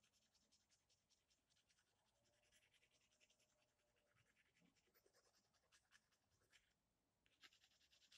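Faint pencil scratching on paper in quick, short strokes, with a brief pause near the end.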